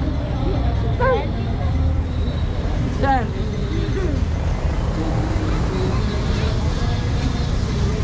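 Crowd of people talking indistinctly over a steady low rumble, with a voice calling out briefly about a second in and again about three seconds in.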